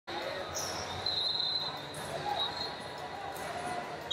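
Echoing sports-arena background: distant voices and gym noise, with a thin, high steady tone lasting about a second, starting about a second in.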